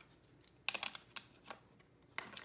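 A few light clicks and knocks of a plastic ink pad case being picked up and handled on a tabletop: a small cluster about two-thirds of a second in, then two single clicks.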